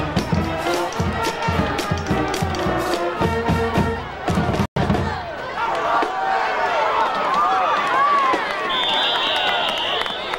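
Band music in the stands, a steady drum beat with horns, for the first four seconds or so, cut off suddenly by a short dropout in the recording. Then crowd voices and cheering, with a sharp whistle blast of about a second near the end as the play ends.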